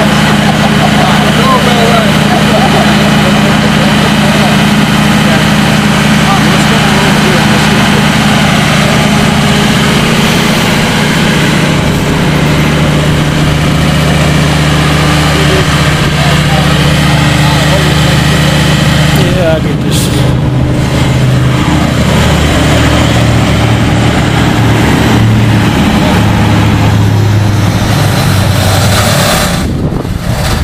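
An engine idling with a steady low hum that drops and shifts in pitch about two-thirds of the way through, with faint voices murmuring under it.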